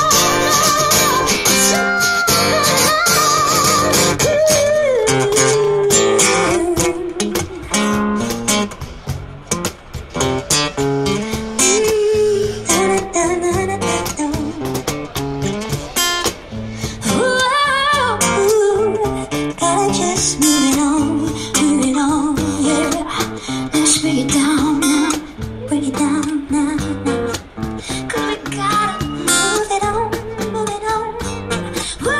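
Acoustic guitar strummed steadily under a woman singing an improvised melody: her voice starts high and wavering, then moves down to lower held notes.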